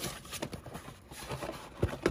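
Cardboard toy box being handled and opened by hand: a few light knocks and scrapes of cardboard, the sharpest one near the end.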